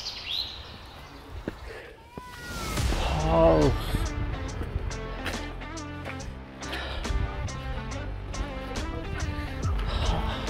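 Birds chirping briefly, then background music with a steady beat comes in about three seconds in.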